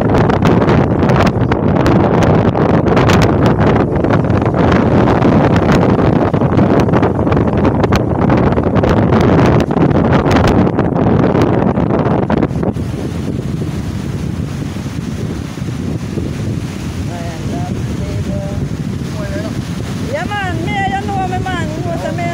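Wind buffeting the microphone in loud, crackling gusts for about the first half, cutting off abruptly. After that comes a quieter steady rumble, with a voice faintly heard near the end.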